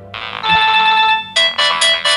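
Mobile phone ringtone going off: an electronic melody that opens with a held note, then a run of short repeated notes.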